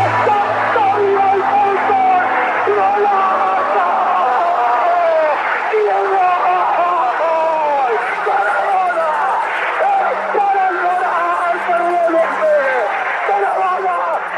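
A man's excited Spanish football commentary, shouting with long drawn-out cries, over background music with low sustained notes.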